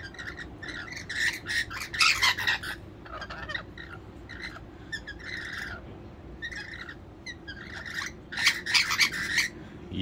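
Rainbow lorikeets chattering at close range in runs of short calls, with the loudest bursts about two seconds in and again near the end.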